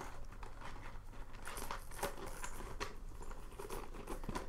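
Faint clinks and rustles of a gold-tone chain strap being looped by hand around a leather handbag, with small scattered clicks of the metal links.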